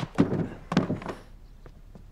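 Two dull thuds about half a second apart, followed by a few faint taps.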